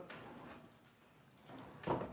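Quiet room tone of a large meeting chamber, a faint steady hiss with no distinct sound, and a short spoken word near the end.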